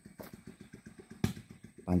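A small engine idling in the background, heard as a quick, even train of low pulses, with one sharp click a little past the middle.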